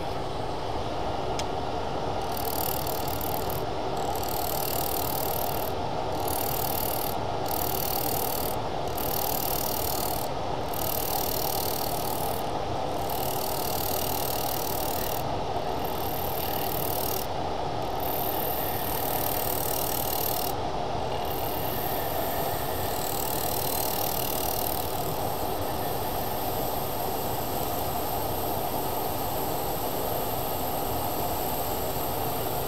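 Lathe running with a carbide turning tool cutting into a spinning cast-resin blank holding a mini golf ball, peeling off long resin shavings in a steady, continuous cutting noise. The resin is soft and turns easily.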